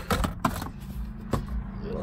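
A few sharp clicks and knocks of plastic car interior trim being handled and set in place, with a low steady hum coming in about a second in.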